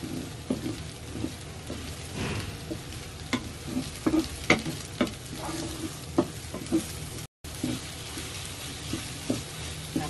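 Wooden spatula stirring and scraping soft scrambled eggs around a nonstick wok, with irregular light knocks against the pan over a low sizzle of frying.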